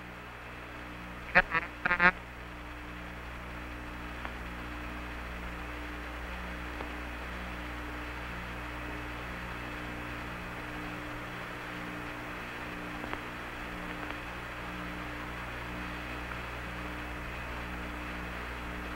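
Hiss and hum of the Apollo 11 air-to-ground radio channel, with a low tone pulsing on and off. About a second and a half in, two short warbling blips break through, like garbled radio voice.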